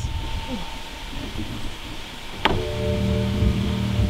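A click about two and a half seconds in, followed by a steady mechanical hum from a BMW 135i, after a stretch of low rumbling noise.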